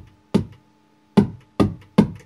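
Vermona Kick Lancet analog kick drum synthesizer firing single kick drum hits with its oscillator source switched to sine: one kick, a pause of under a second, then three more in quick succession, each with a sharp click and a fast decay.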